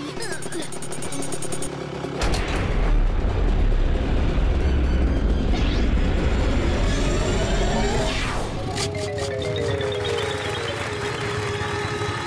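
Cartoon rocket-launch sound effects: a fast run of electronic beeps, then a loud rumbling blast of rocket thrust from about two seconds in. A falling whoosh comes near eight seconds, and background music carries the last few seconds.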